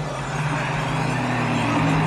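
A motor vehicle's engine, a slightly rising tone with a noisy rush that builds over about two seconds and cuts off just after, over a steady low drone in the background score.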